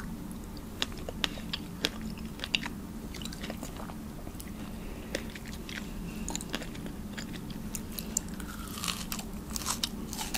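Close-miked chewing of soft, juicy strawberry flesh: scattered wet mouth clicks and squelches, becoming busier near the end.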